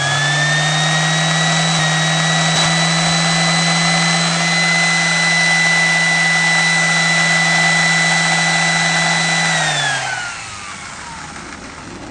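Electric palm sander running free, powered from a homemade 12 V to 120 V modified-sine-wave inverter. Its motor whine rises in pitch over the first couple of seconds and then holds steady. Near the end it winds down with falling pitch.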